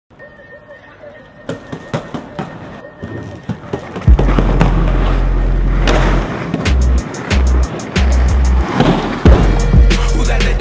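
Inline skate wheels rolling and clacking on hard ground, with sharp clicks and knocks; about four seconds in, loud music with a heavy bass line comes in over the skating.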